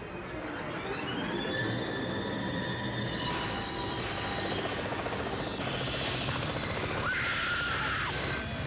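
Helicopter running close overhead with a whine that rises and settles to a steady pitch in the first two seconds, mixed with a commercial's music and sound effects. A high held tone comes in near the end.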